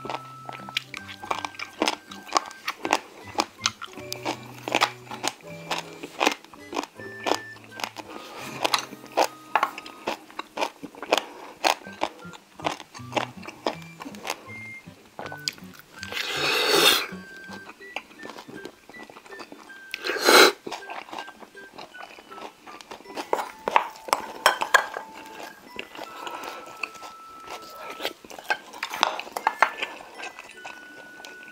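Close-up crunching and chewing of spicy steamed monkfish with crisp bean sprouts, many sharp crunches throughout. About halfway through come a long loud slurp as the sprouts are drawn into the mouth, then a shorter one a few seconds later. Light background music plays under it, with a bass line in the first half.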